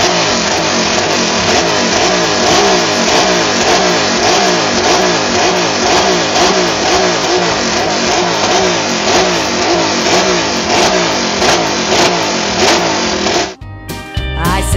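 Ducati V-twin motorcycle engine revved hard on a stand in quick, repeated throttle blips, about two a second, loud. It cuts off suddenly near the end.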